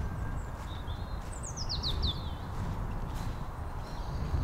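A small bird chirping: a quick run of about five high notes, each falling in pitch, a little over a second in, with a few single chirps before it, over a low steady rumble.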